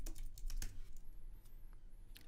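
Typing on a computer keyboard: a quick run of keystrokes that thins out to a few separate taps in the second half.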